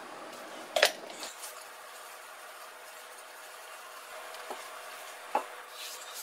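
A few light knocks and clinks of kitchenware against a ceramic baking dish while chicken meatballs are dusted with flour, with one sharper clack about a second in. A faint steady room hum lies underneath.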